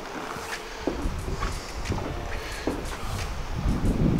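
Wind buffeting the microphone, an uneven low rumble, with a few faint light knocks.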